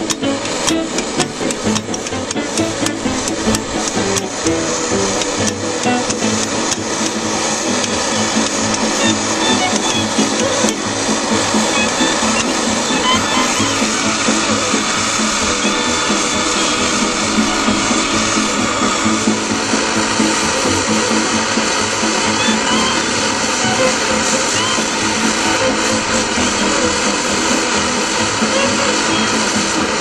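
The burner of a 1930s Monitor paraffin pressure stove, running with a steady noise that builds over the first ten seconds or so and then holds even, under background music.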